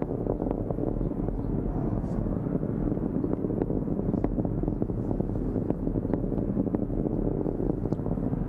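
Distant rumble of a Falcon 9 rocket's nine Merlin first-stage engines in ascent: a steady low rumble scattered with sharp crackles.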